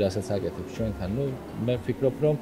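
Speech only: a man's low voice talking.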